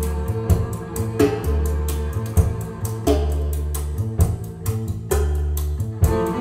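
Jazz with a prominent plucked bass line and sharp percussion strikes, played back through a JBL Hartsfield horn loudspeaker system whose crossover network has just been serviced, and picked up by a microphone in the listening room.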